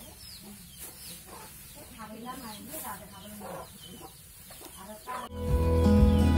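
Hens clucking with small birds chirping and intermittent knocks from rice sheaves being handled for threshing; loud instrumental music cuts in abruptly near the end.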